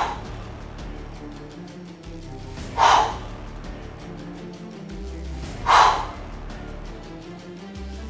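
Three sharp, forceful exhalations, about three seconds apart, each on a dumbbell hammer-curl repetition, over background music.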